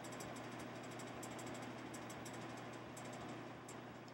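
Quiet room tone: a steady low electrical hum under a faint hiss, with scattered faint high-pitched ticks.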